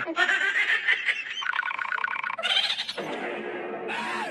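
A person laughing in a run of quick, high-pitched pulses.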